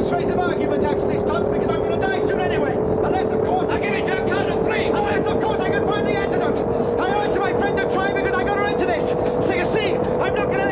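A spaceship engine drone in a television sound effect: a steady hum whose pitch slowly rises, with a man's voice over it.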